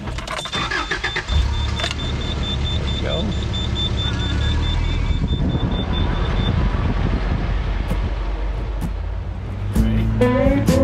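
Car warning chime beeping rapidly and evenly, several beeps a second, for about six seconds, while a low engine rumble comes in about a second in and keeps running.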